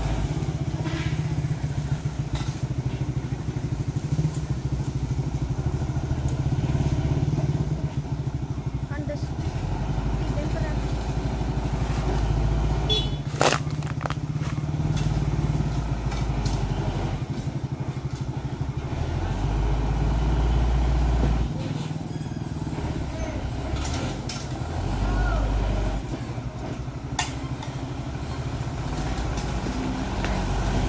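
Diesel engine of a Mitsubishi Fuso 220PS 6x4 dump truck working under load as it crawls through deep mud ruts. It is a low engine throb that swells and eases as the driver works the throttle, with one sharp crack about halfway through.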